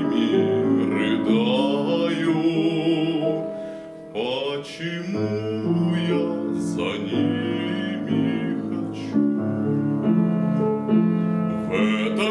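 A male classical voice singing a Russian romance with vibrato, accompanied by a grand piano; the sound briefly drops away about four seconds in before the next phrase begins.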